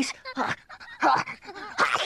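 A cartoon character's voiced sneeze: a couple of short, catching breaths, then the sneeze itself near the end.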